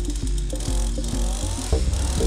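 Background music with a steady beat over a McCulloch two-stroke trimmer engine idling just after starting. The sound grows louder and fuller near the end.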